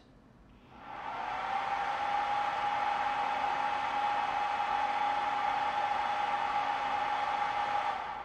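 PowMr 60 A MPPT solar charge controller's built-in cooling fan spinning up about a second in as the unit powers up on the battery. It rises briefly in pitch to a steady whine over an airy rush, then starts to wind down at the very end.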